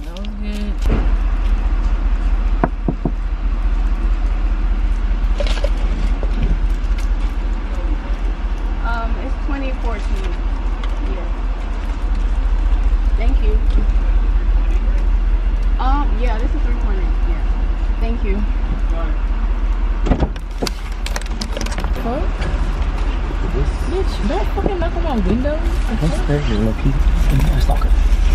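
Car engine idling, a steady low rumble heard inside the cabin, with a few clicks and rustles of plastic packaging being handled.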